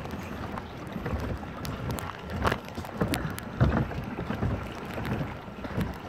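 Wind on the microphone over lapping water, with irregular soft knocks scattered through.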